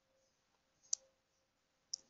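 Two short, faint, sharp clicks about a second apart, the first a little louder, in otherwise near silence.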